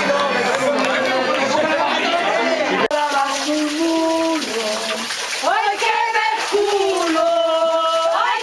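A crowd of voices talking and calling all at once, cut off suddenly about three seconds in. Then a slow folk melody sung with long held notes that step up and down, over water running into a stone wash trough.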